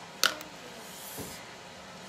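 Kitchen handling of a jar of mayonnaise: one sharp click about a quarter second in, then only faint, soft handling sounds as it is scooped out.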